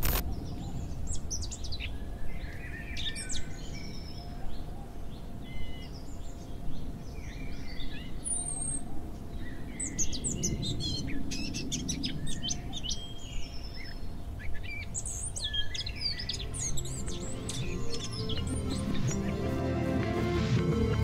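Birds chirping and calling: many short, high chirps and whistles, over a steady low rumble. A low, repeating musical pattern comes in near the end.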